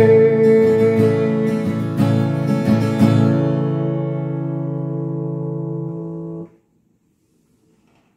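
Acoustic guitar playing the closing chords of a song: strummed chords about a second apart, then a last chord left ringing and slowly fading until it is cut off suddenly about six and a half seconds in.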